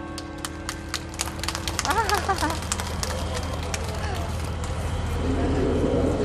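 Scattered hand claps from a crowd, irregular and thinning out after about three seconds, with a brief wavering voice call about two seconds in.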